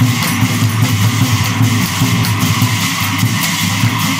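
Live Ojapali devotional music: a group of voices singing together over small hand cymbals struck continuously. The sound is loud and dense.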